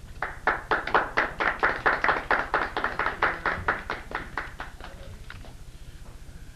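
Small audience applauding, about five claps a second, dying away after about five seconds.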